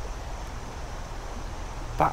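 Steady outdoor background noise with a low rumble and no distinct events.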